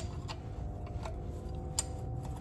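Hand wrench working a steering rack bracket bolt under a car: a few irregular, sharp metallic clicks, the loudest near the end, over a faint steady hum.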